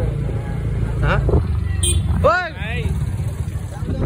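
Motorbike engine running at a steady pace while riding, with a continuous low rumble and wind noise on the microphone. A voice speaks briefly twice over it.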